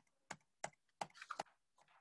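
Faint clicking of computer keys: about six short clicks in the first second and a half, as the slide animations are stepped through.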